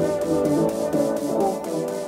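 Instrumental intro music: a melody of stepped notes over a steady light beat, its low end thinning out in the second half.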